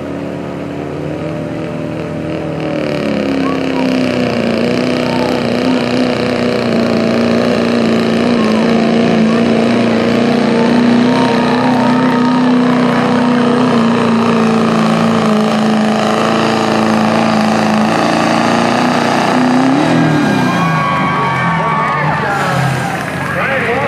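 Diesel pickup truck engine held at high revs under full load while pulling a weight sled, climbing in the first few seconds and then running as a steady drone. Near the end the revs swing up and drop away as the pull ends.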